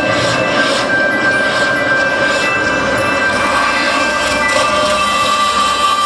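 Soundtrack of an outdoor light-projection show playing over loudspeakers: held steady tones over a rolling, clattering soundscape with soft regular beats about twice a second.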